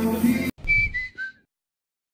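Live band music cuts off abruptly about half a second in, followed by a short outro sting: three high notes, each stepping down in pitch, over a soft low thud.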